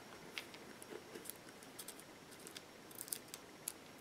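Faint, scattered light clicks and rustles of small glass mosaic pieces being nudged around on a paper sketchbook page by hand.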